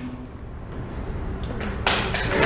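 A pause in a room with low background noise, then an audience starting to clap near the end.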